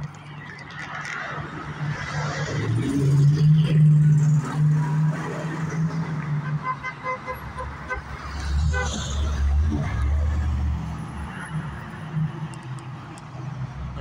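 Road traffic on a wide multi-lane street: a vehicle's engine hum swells and passes, loudest about four seconds in, then a second vehicle rumbles past around nine seconds in.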